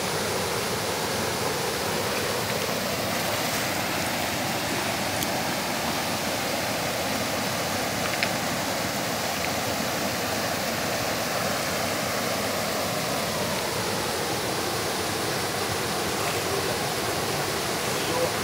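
A small waterfall pouring over rock ledges into a river: a steady, unbroken rush of water.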